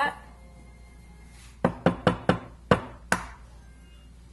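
A raw egg knocked against a hard edge to crack its shell: six sharp taps over about a second and a half, unevenly spaced, the last one the loudest.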